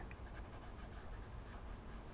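Faint, soft scratching of a pressed-paper blending stump rubbed over colored-pencil wax on paper, pushing the wax to blend it.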